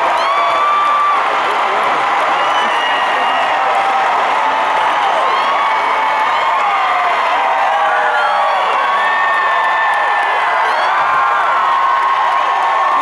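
A large stadium crowd cheering, clapping and whooping, many voices at once, at a steady level.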